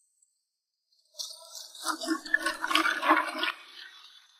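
Water sloshing in a wooden tub of river snails as the tub is tilted and swirled, the shells clicking and rattling against each other. It starts about a second in and dies away about three and a half seconds in.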